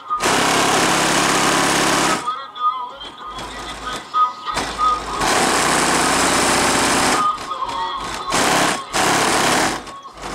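DB Drive WDX G5 subwoofers in a car trunk playing a hip-hop track at high volume, the bass so loud that the recording distorts. Loud bass stretches of about two seconds alternate with quieter passages, one from about two to five seconds in and another around eight seconds.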